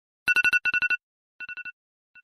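Smartphone ringing with an incoming call: a telephone-bell style ringtone of quick trilled rings, two loud bursts followed by a softer repeat near the end.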